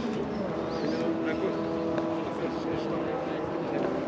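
A car engine running steadily at an even pitch, with people talking faintly in the background.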